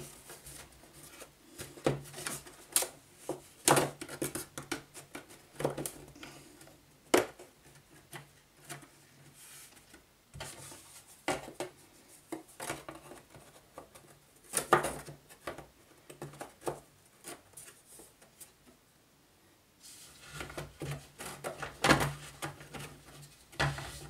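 Thin laser-cut wooden panels being fitted together by hand, their finger joints giving scattered light clicks and knocks, with a quieter spell about three-quarters of the way through.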